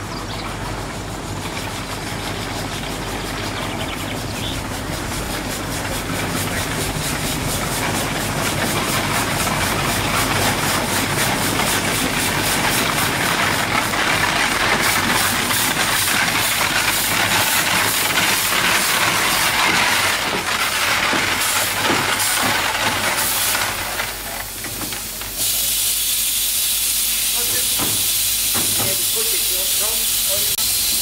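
The 1897 Soame steam cart's steam engine running. Its hiss grows louder as the cart approaches, carried on an even run of exhaust beats. Near the end it changes suddenly to a steady, bright hiss of escaping steam.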